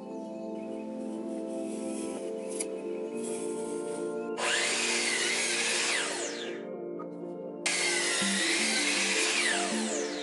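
DeWalt sliding compound miter saw making two cuts through green-tinted pressure-treated boards. Each cut starts suddenly, about four and a half seconds in and again near eight seconds, and ends as the blade spins down.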